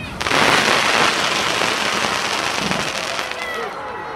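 Fireworks crackling overhead: a dense burst of crackle starts suddenly a moment in, then slowly fades away.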